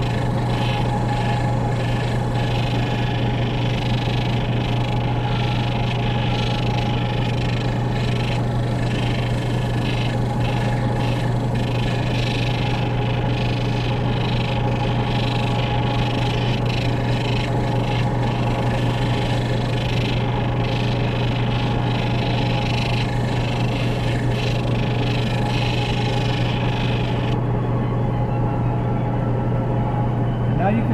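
End lap sander's motor running with a steady hum while a gemstone on a dop stick is pressed to its spinning wet-or-dry sandpaper disc, giving a rough grinding hiss over the hum. About 27 seconds in the grinding stops as the stone is lifted off, leaving the motor hum.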